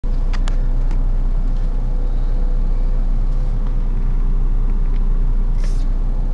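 Steady low rumble with a constant hum and a faint higher tone, and a few faint clicks near the start.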